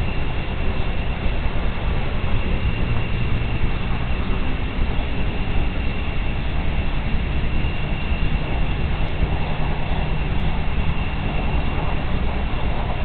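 Steady outdoor night background at a nest-camera microphone: a continuous low rumble with a thin, constant high tone above it.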